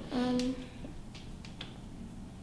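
A brief voiced sound near the start, then a few light, sharp clicks and taps of plastic syringes and tubing being handled on a tabletop.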